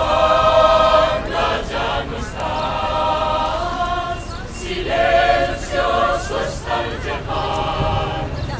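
Mixed choir singing a cappella, holding sustained chords in phrases separated by short breaths.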